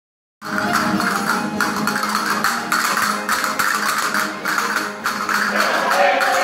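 Spanish folk ensemble music with guitar and other plucked strings, driven by regular castanet clicks about twice a second. It starts abruptly about half a second in.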